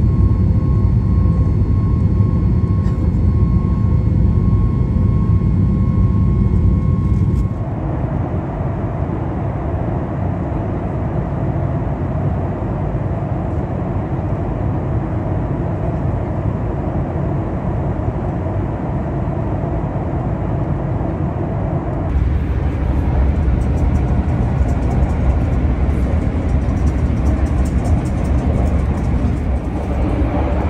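Steady rumble of an airliner cabin in flight, jet engine and airflow noise, with a faint steady whine in the first part. The sound changes abruptly twice, about 7 seconds in and about 22 seconds in, where the footage is cut.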